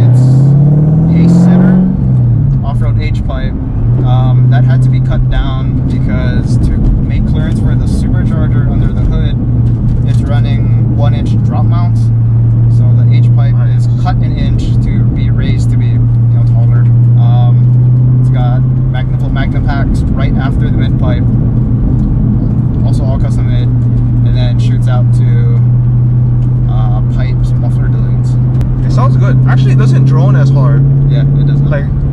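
Supercharged 2007 Mustang GT's 4.6-litre V8 and exhaust heard from inside the cabin. The revs climb in the first couple of seconds, then the engine holds a steady drone while cruising.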